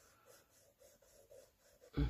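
Faint scratching of a charcoal pencil drawing short strokes on sketch paper.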